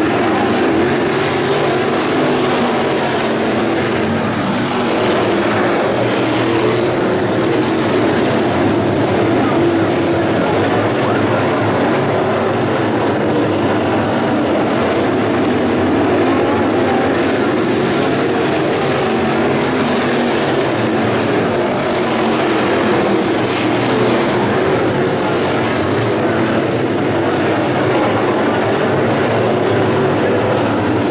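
A pack of dirt late model race cars with 602 crate V8 engines running together around the track, a steady, unbroken mass of engine noise from the whole field.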